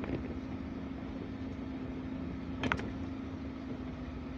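Volvo truck's diesel engine running steadily at low speed, heard from inside the cab as a low rumble with a constant hum. A brief sharp click comes about two and a half seconds in.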